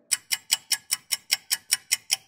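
Analog clock ticking fast and evenly, about five ticks a second, as a sped-up time-passing sound effect.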